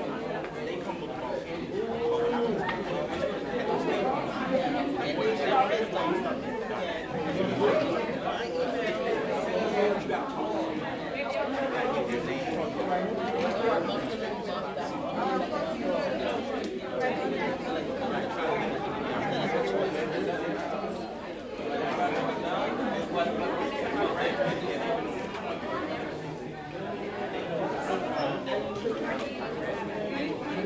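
Many people talking at once around dining tables: a steady babble of overlapping conversations in a large hard-floored hall, with no single voice standing out.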